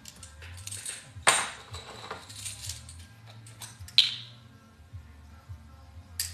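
Small hard objects clicking and clinking against a ceramic dish and a small plastic capsule as a pearl is handled: a sharp click about a second in and a bright ringing clink at four seconds, with lighter ticks between.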